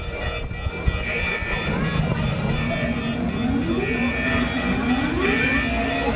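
Siren wails rising in pitch one after another, over a low rumble of wind on the microphone.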